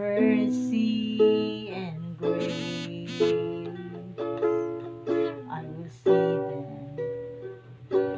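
Ukulele strummed in chords, about one strum a second, each chord ringing and fading before the next.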